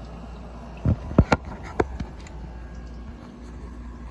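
Several quick clicks and knocks of a small diecast car being handled inside a plastic enclosed car-hauler trailer toy, bunched together about a second in, over a steady low hum.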